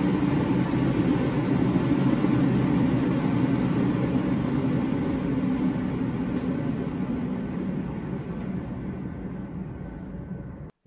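EnviroKlenz air purifier's fan running: a steady rush of air with a low motor hum, stepped down through its speed settings with the control knob. A few faint clicks come as the knob turns, and the air noise grows gradually quieter and duller toward the end.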